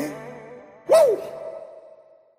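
The end of an R&B song: the backing track dies away, then about a second in a single short breathy vocal exclamation, its pitch rising and falling, rings out with a lingering tail.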